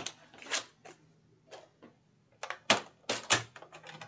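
Paper trimmer cutting a sheet of cardstock, with faint scrapes early on, then a run of sharp plastic clicks and clacks for about a second, starting halfway through, as the cut strip comes free and the trimmer's arm is moved.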